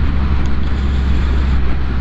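Triumph Rocket 3R's 2.5-litre three-cylinder engine running at a steady cruise, a constant low drone with wind rushing over the microphone.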